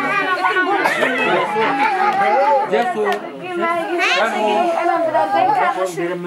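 Several voices talking over one another in lively group chatter.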